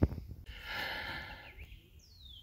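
A brief knock at the start, then a person breathing out for about a second, close to the microphone.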